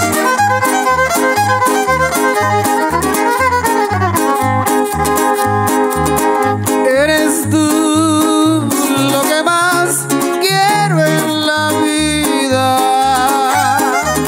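Live music from a string trio: a violin carries a wavering, sliding melody over strummed guitars and a steady plucked bass beat, about two pulses a second, with no singing.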